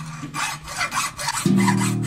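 Hand hacksaw cutting a bridge blank held in a vise: quick rasping back-and-forth strokes, about four a second. About one and a half seconds in, the strokes stop and a sustained string note from the Vevlira (a hurdy-gurdy) takes over.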